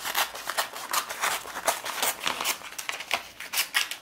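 Leatherman Raptor rescue shears snipping through a sheet of paper: a quick, irregular run of short cutting snips with paper rustle. The paper cuts cleanly without folding into the blades.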